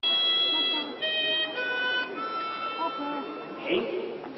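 Harmonica playing a slow tune in long held notes, moving from note to note in steps. A few words are spoken near the end.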